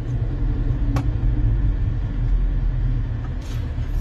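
Steady low rumble of a car heard from inside the cabin, with a single sharp click about a second in.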